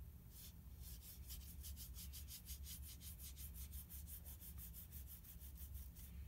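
A swab loaded with grey fountain pen ink scrubbed rapidly back and forth across a paper card, a faint scratchy rubbing of about seven even strokes a second from about a second in.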